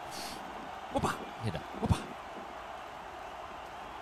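A man's brief spoken call, "hit her," over a steady low background hiss.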